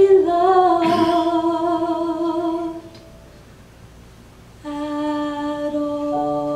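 A woman singing into a microphone, holding one long note that shifts pitch slightly about a second in and breaks off just under three seconds in. After a short lull, sustained notes come in again.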